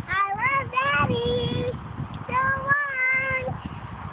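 A young girl singing a made-up tune in a high voice: a few quick rising notes, then a held note, a short break, and a second phrase with a long held note.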